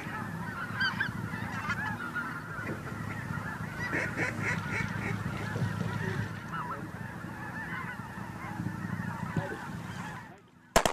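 A large flock of geese in flight calling, many honks overlapping into a continuous clamor.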